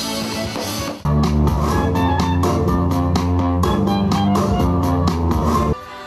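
Live band music with electric bass, guitar and a steady beat. It dips briefly about a second in, comes back louder with a heavy bass line, and drops in level near the end.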